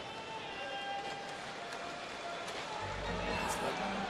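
Quiet hockey-broadcast arena ambience with faint music. A low hum joins about three seconds in.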